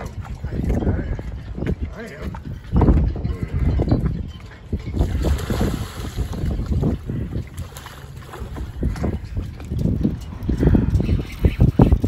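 Water splashing for about two seconds, starting about five seconds in, as a hooked sea turtle of about 150 pounds thrashes at the surface. Low wind rumble on the microphone and indistinct voices run under it.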